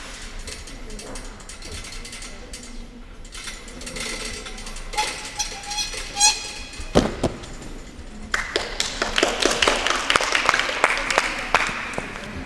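A gymnast's dismount from a horizontal bar: one heavy thud about seven seconds in as she lands on the mat, followed by several seconds of scattered hand clapping.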